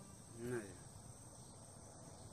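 A brief wordless vocal sound, its pitch bending up and down, about half a second in. After it comes a faint background with a steady high-pitched hum.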